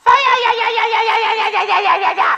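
A woman's voice holding one long, high wailing note that sags slightly in pitch and wavers.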